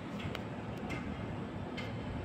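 A steady low outdoor rumble with a few short, sharp ticks.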